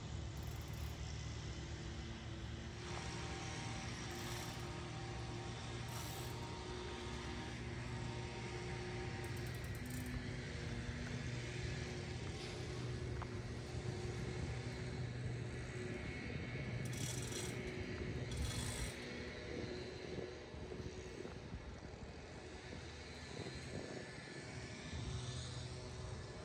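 A steady low engine drone in outdoor ambience, with no sudden events standing out.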